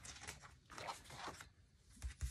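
Faint rustling and sliding of paper pages being turned by hand in a spiral-bound glue book made from a Little Golden Book: a few short rustles with brief pauses.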